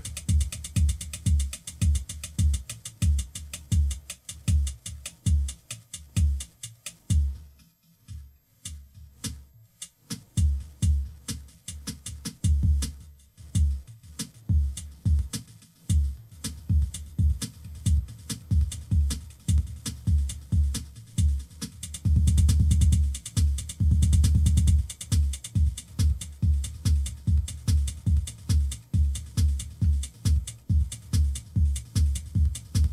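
Home-built microcontroller drum machine playing a fast electronic beat with a heavy, regular kick drum. The beat thins out for a couple of seconds about a quarter of the way in, then picks up again, and near three quarters of the way through it runs into a couple of seconds of rapid, dense bass hits.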